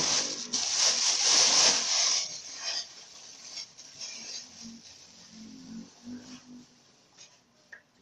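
Hands kneading and rubbing a sticky dough of cooked rice and tapioca flour. A loud rustling rub lasts for about the first two seconds, then softer, scattered handling sounds follow.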